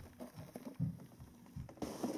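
Faint, soft low thumps and rustling, typical of a camera being handled and moved close in to zoom.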